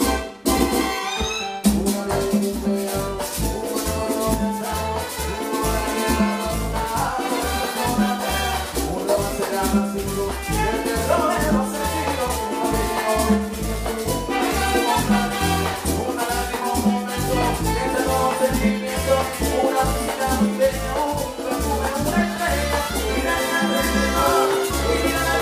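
Live salsa orchestra playing, with saxophone, congas and a shaker over a steady beat. The sound dips briefly just after the start.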